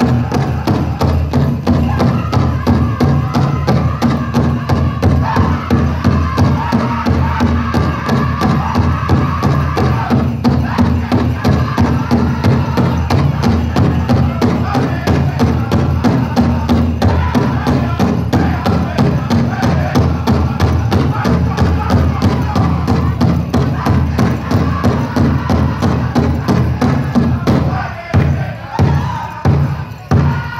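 A powwow drum group drumming and singing a fast men's fancy dance song: a big drum struck in a fast, steady beat under the singers' voices. Near the end the drumming breaks into a few spaced, separate strokes as the song closes.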